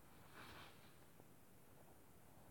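Near silence: room tone, with one faint, short hiss of noise about half a second in.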